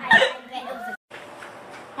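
A person's short, sharp vocal outburst just after the start, like a laugh or gasp, with a little voice after it. About a second in the sound cuts out completely for an instant, then only low background sound remains.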